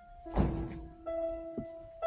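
Grand piano being played: a held note dies away, then about a third of a second in a loud low chord is struck with a heavy thud and rings on. A lighter knock follows near the end.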